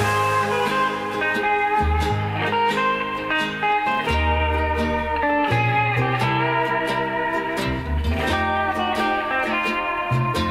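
Hawaiian band instrumental: steel guitar carrying the melody over a plucked rhythm and a bass line that changes note every second or two.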